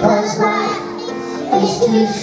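Children singing a song, a girl's voice on a microphone leading the group.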